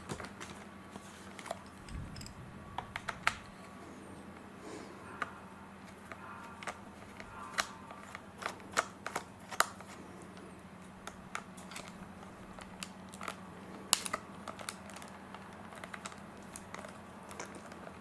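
Irregular small clicks and taps of a No. 1 Phillips precision screwdriver turning screws out of a Dyson V7's plastic battery housing, mixed with light plastic handling knocks, one louder click near the end; a faint steady hum underneath.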